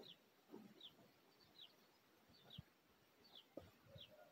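Near silence with a faint bird call: a short falling chirp repeated a little more than once a second. A few soft knocks sound between the chirps.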